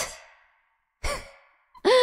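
A woman sighing into a close microphone about a second in, the breath giving a short thump, then a falling hum of her voice beginning near the end, both with a reverb tail.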